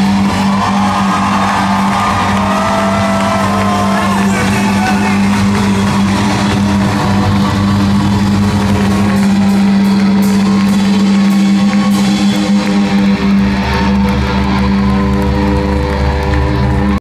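Live rock band playing, recorded from within the crowd, with a steady low note held under the music and gliding high lines in the first few seconds.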